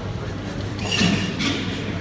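Steady background hum and murmur of a large indoor hall, with a brief brighter noise about a second in.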